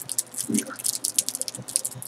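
Irregular small clicks and rustles of hands handling packaging and accessories, such as plastic wrap, cards and a coil of wire.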